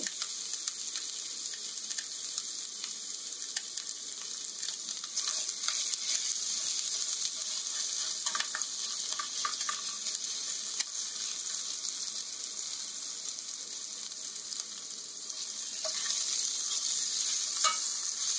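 Ginger-garlic paste, green chillies and whole spices (cumin seeds, cloves, bay leaf) sizzling steadily in hot oil in a stainless steel pan. A metal spatula stirs and scrapes the pan now and then.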